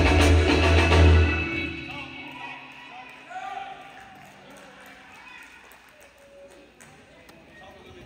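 A live band with electric bass, guitars, drums, keyboards and horns ends a song on a held chord that stops about one and a half seconds in. Faint voices follow in a large hall.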